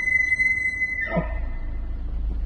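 Bull elk bugling: a high, steady whistle with overtones that breaks about a second in, dropping sharply down to a low grunt.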